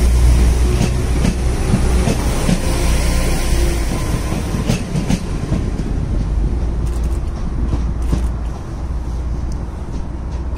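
Diesel multiple unit pulling out of the station past the platform: a heavy low rumble that slowly fades as it draws away, with scattered clicks of wheels over the rail joints.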